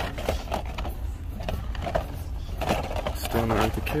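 Carded action figures in plastic blister packs rustling and clacking as a hand flips through them on a peg hook, a string of quick crinkles and clicks. A steady low hum runs underneath.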